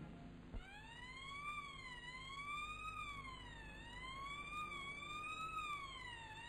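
Ambulance siren wailing, its pitch sweeping up and down about once a second. It starts just after a short click about half a second in.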